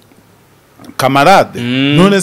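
A man's voice: a pause of about a second, then speech that ends in one long, drawn-out vowel.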